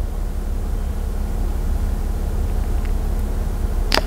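Steady low rumble with a faint hum underneath, and a single sharp click near the end.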